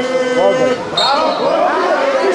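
Several football spectators' voices shouting and talking over one another, with a brief high-pitched tone about a second in.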